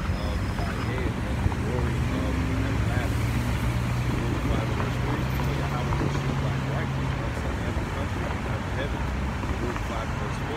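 City street traffic at an intersection, with cars passing and a low engine hum that grows louder for a few seconds in the middle.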